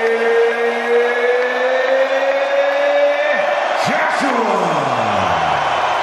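Ring announcer bellowing the boxer's surname "Joshua" as one long drawn-out call: a held note rising slightly for about three seconds, then breaking into a long falling glide. Arena crowd noise runs underneath.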